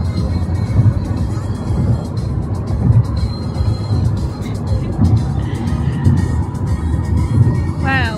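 Steady road and engine rumble inside a moving car's cabin, with music playing.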